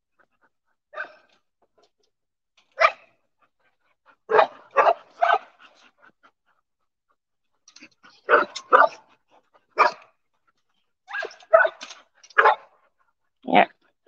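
Dogs barking in short, sharp barks, some single and some in quick runs of two or three, with brief quiet gaps between them.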